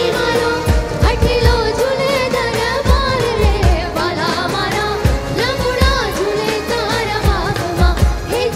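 Live garba music from a Navratri stage band: a wavering, ornamented melody over a driving beat of low drum hits.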